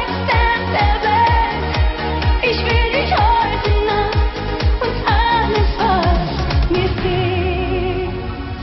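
A woman singing a German Schlager pop song into a microphone over a backing track with a steady kick-drum beat of about two beats a second. Near the end the beat stops and she holds a long final note with vibrato.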